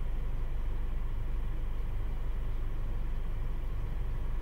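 A steady low mechanical hum, like an engine or machine running, at an even level throughout.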